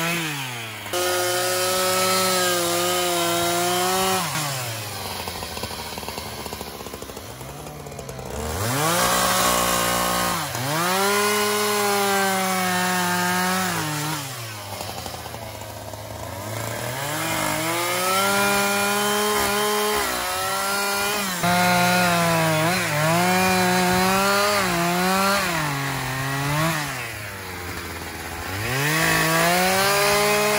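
Husqvarna 372 XP, a 70.7 cc professional two-stroke chainsaw, cutting through beech logs under load. Between cuts it drops to idle, then revs back up, several times over.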